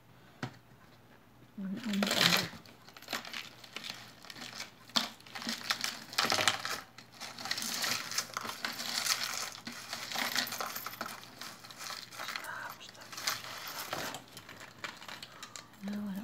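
Close handling noise: a run of crinkling and rustling with small clicks, from about two seconds in until just before the end, as a piece of jewelry is handled and turned over.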